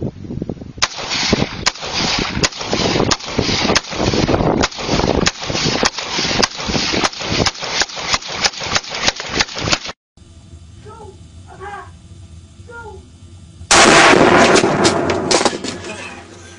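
Kalashnikov-type assault rifle firing a long string of rapid shots, about three a second, for some nine seconds. It cuts off abruptly to a quieter stretch, and a loud rush of noise begins about two seconds before the end.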